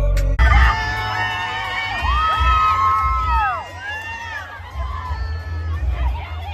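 A crowd of teenagers screaming and cheering, with long high shrieks, over dance music with a heavy bass beat. A hip-hop song cuts off suddenly about half a second in.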